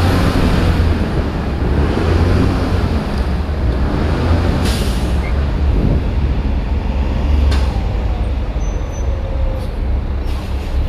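Neoplan shuttle bus running and rolling slowly, a steady low engine rumble under road and body noise, with two short hisses about five and seven and a half seconds in.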